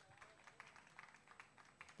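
Faint, scattered hand clapping from a small audience, a few irregular claps a second.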